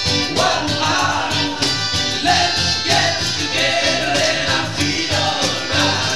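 Acoustic band playing reggae live, with a singer over acoustic guitar and a steady beat.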